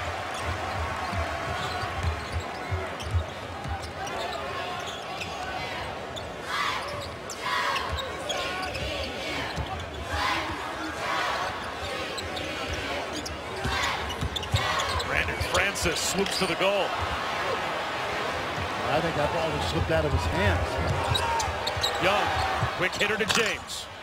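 Arena crowd noise during live basketball play, many voices at once, with a basketball dribbling on the hardwood court.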